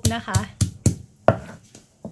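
Stone pestle pounding shallots against a wooden chopping block: several sharp knocks, about two a second, crushing the shallots.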